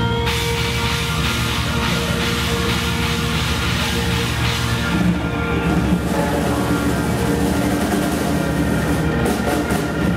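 Live progressive rock band playing at full volume: drum kit and bass guitar in a dense arrangement, with a bright cymbal-like wash in the first half and a change in the arrangement about five seconds in.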